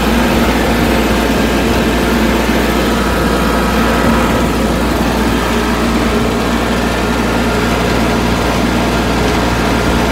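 Farm tractor's engine running steadily under way, heard from the driver's seat as the tractor drives along a road.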